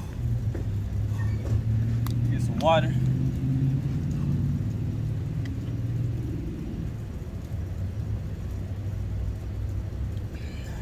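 A steady low rumble of outdoor background noise, with one short warbling call about three seconds in.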